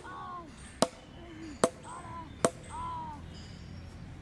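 Crows cawing several times in short, harsh calls. Three sharp knocks come just under a second apart in between.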